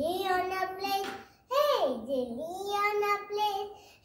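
A young girl singing alone, without accompaniment, holding long notes with a steep swoop down in pitch about midway.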